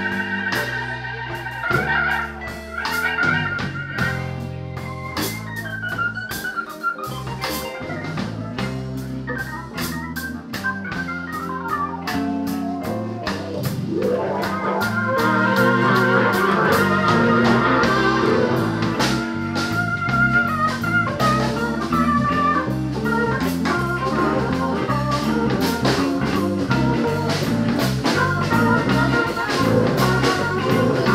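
Hammond-style organ solo played on a Hammond stage keyboard, with sustained chords and quick melodic runs over a walking bass line and drums in a blues jam. The playing grows louder and busier about halfway through.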